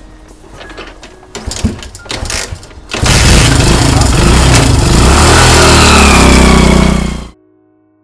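Motor scooter engine starting and running close by, very loud, after a few clicks and knocks from handling the scooter; the sound cuts off suddenly.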